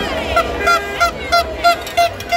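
A horn sounding in a quick run of short, same-pitched toots, about three a second, over the noise of a crowd.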